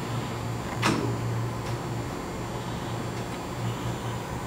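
Parker-Majestic internal grinder running under power table traverse with a steady hum. A single sharp knock comes about a second in, as the table dog trips the reversing stop.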